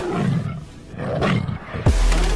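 Break in a dubstep-style electronic track before the drop. The beat and bass stop and a low, wavering, growl-like sound plays, dipping briefly midway. A fast downward pitch sweep near the end leads into the heavy bass of the drop.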